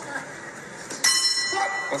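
Boxing ring bell struck about a second in to end the round, ringing on with a bright metallic tone, heard through a tablet's speaker.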